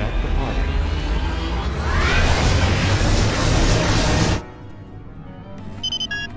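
Animated-film soundtrack: music over a deep sci-fi rumble that swells about two seconds in and cuts off abruptly after about four and a half seconds. A quieter stretch follows, with short electronic beeps near the end.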